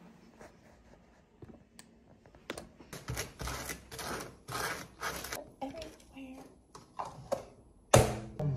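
Table knife spreading butter on a plate, a run of about six rasping scrapes, followed by a few light clinks.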